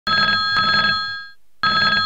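An old-style telephone ringing as a sound effect: one ring lasting about a second that fades out, a brief pause, then a second ring starting near the end.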